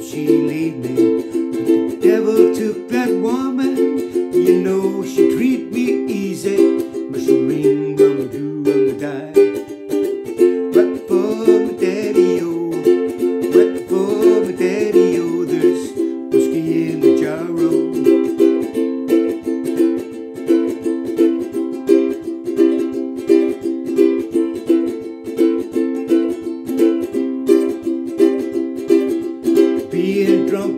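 Ukulele strummed in a steady rhythm. A man sings wordless chorus syllables over it for roughly the first half, then it runs on as strumming alone.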